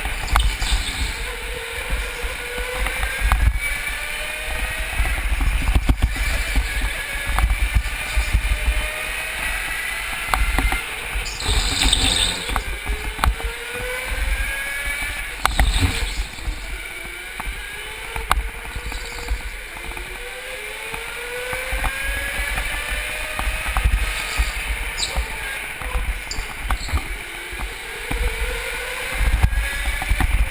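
Go-kart motor whining, its pitch rising again and again as the kart accelerates out of each corner, over a steady low rumble from the kart running on the track. There are a few brief knocks and a short hiss about twelve seconds in.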